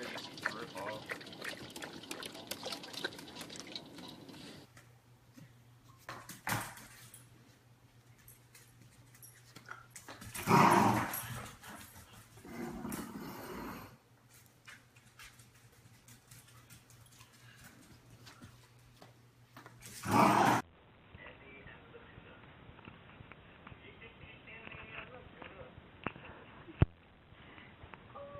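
A dog barking in loud short bursts, the longest lasting about a second about ten seconds in and another near twenty seconds in, between stretches of faint room noise.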